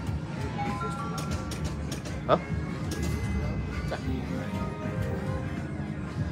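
Wheel of Fortune 3D slot machine sounds during a free-games bonus: a short run of stepped electronic tones as a spin pays and the win meter counts up, then two brief swooping tones, over a steady low casino hum.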